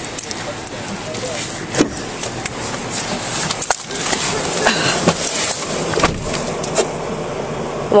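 Rustling and several short knocks from handling of a body-worn camera as its wearer opens a police car door and gets into the driver's seat, over steady loud noise.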